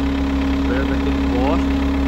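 Caterpillar 236D skid steer loader's diesel engine running steadily at idle, an even low hum with no revving.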